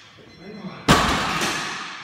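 A 245 kg loaded barbell lowered from a deadlift lockout lands on the lifting platform just under a second in: one heavy clang that rings out and fades over about a second.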